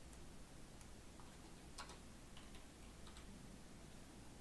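Near silence: room tone with a few faint, irregularly spaced clicks.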